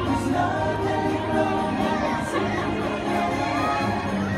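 Parade music playing steadily, with a crowd cheering and children shouting over it.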